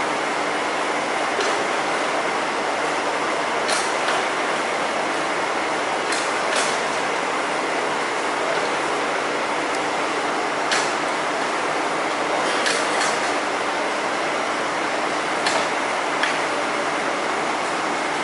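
Steady running noise of a parked coach bus, an even hiss with a faint hum underneath, broken by a few short light clicks or taps.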